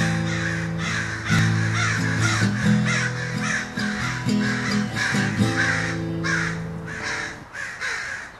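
Acoustic guitar music with crows cawing over it, about two harsh calls a second; the music fades out near the end.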